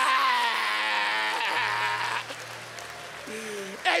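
A man's long, held vocal sound trails off and slides down in pitch, then audience laughter and applause fade away.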